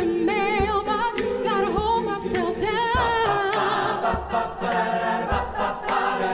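A cappella vocal group singing held backing chords with vibrato, over an evenly paced vocal-percussion beat of sharp ticks and low thumps.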